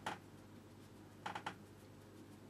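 Flat watercolour brush working against the paper: a quick cluster of short brush strokes about a second and a quarter in.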